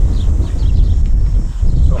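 Wind buffeting an outdoor microphone: a loud, uneven low rumble with no speech over it.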